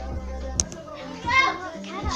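Children's voices talking in the background, loudest a little past the middle, with a sharp click about half a second in.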